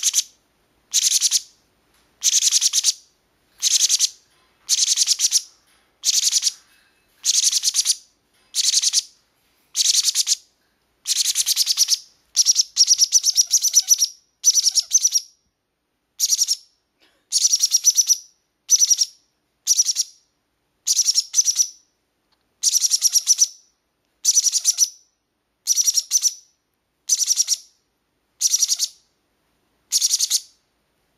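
Baby green-cheeked conure chicks screaming: harsh, raspy high calls repeated about once a second, each about half a second long, running together into a longer stretch about halfway through. This is the screaming the chicks do when hungry.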